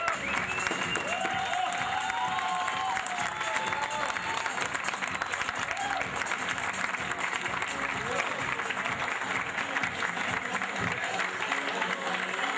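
Audience clapping steadily, with a man's voice over it in the first few seconds and music underneath.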